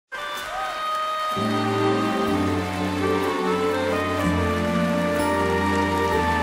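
Orchestral introduction to a slow ballad: strings and woodwinds holding sustained chords, with a low bass coming in about a second in and the harmony shifting every couple of seconds.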